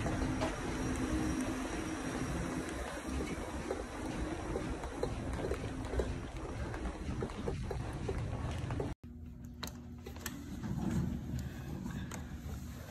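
Low rumble and handling noise from a hand-held phone microphone carried while walking, with faint soft ticks that could be steps. About nine seconds in it cuts abruptly to a quieter, thinner background.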